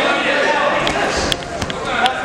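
Several sharp smacks of boxing gloves landing in an exchange of punches in the second half, over shouting voices.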